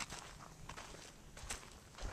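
Faint footsteps through long grass: a few soft steps with a rustle of stems.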